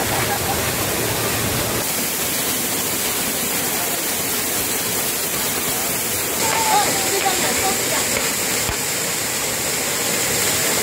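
Agasthiyar Falls pouring down in a steady, heavy rush of falling water onto the bathers. Faint voices cut in briefly about six or seven seconds in.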